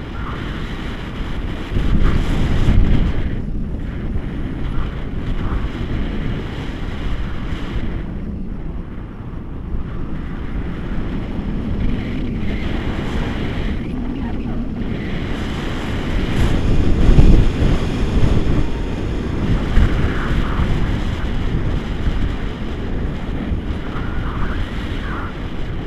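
Airflow buffeting the microphone of an action camera on a selfie stick during a tandem paraglider flight: a steady low rumble of wind noise, swelling louder a couple of seconds in and again about two-thirds of the way through.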